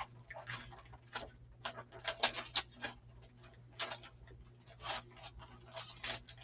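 Hands rummaging through small craft supplies such as sticker sheets and stamps: irregular light clicks, taps and paper rustles, a few each second.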